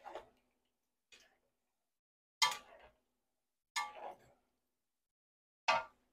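Spatulas knocking and scraping against a wok as beef cooking in its juice is tossed: five short separate clacks, roughly one every second and a bit, the one about halfway through loudest.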